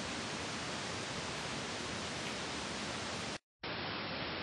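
Steady hiss of recording noise with no other sound, broken by a moment of dead silence at an edit cut about three and a half seconds in, after which the hiss carries on slightly duller.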